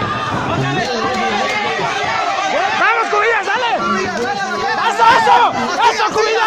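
Several ringside voices shouting and talking over one another, calling encouragement to a fighter, the loudest shouts a little before the end.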